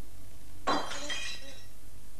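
A china ornament shatters about two-thirds of a second in: a single crash followed by shards ringing and clinking, which die away within about a second.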